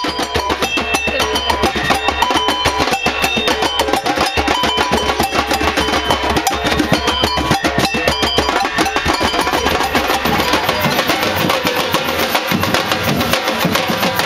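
Street percussion group playing a fast, steady drum rhythm, dense with rapid strokes, with short high notes over the drumming.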